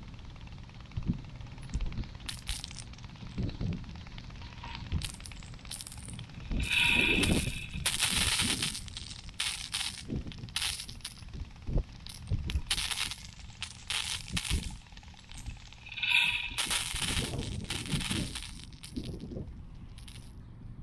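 Netafim MegaNet rotating impact sprinkler running: a string of short, irregular ticks from the rotating head, with two louder rushes of spray about nine seconds apart as the jet sweeps past.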